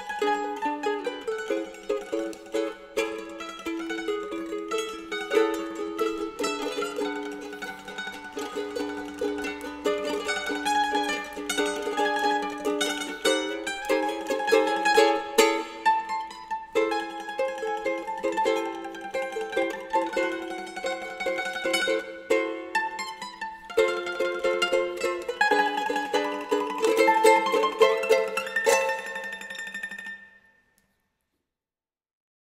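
Ukulele and cavaquinho playing a melody over a rhythmic plucked accompaniment, the music stopping right at the end.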